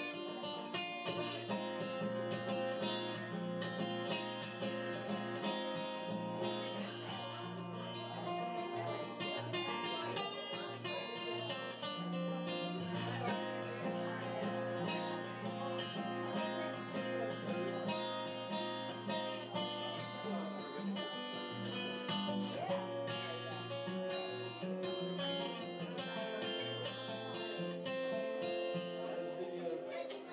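Acoustic steel-string guitar played solo, a steady flow of picked and strummed chords and notes ringing together.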